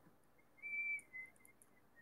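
A man whistling softly: one held note, then a few shorter, slightly lower notes that grow fainter.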